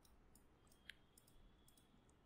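Near silence, with several faint clicks from a computer mouse and keyboard and one brief, slightly louder blip about halfway through.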